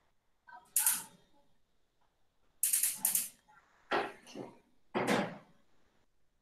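Five or six short, sharp clicks and knocks close to the microphone, irregularly spaced, with near silence between them.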